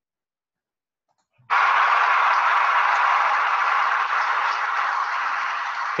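Dead silence, then about a second and a half in a loud, steady hiss starts abruptly and holds: the sound track of a video in the slide show that has just started playing over the screen share.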